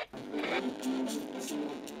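Thin, faint music with a light steady beat and a short melody line, coming through a small radio speaker: audio sent through a homemade FM transmitter and picked up by a receiver during a test.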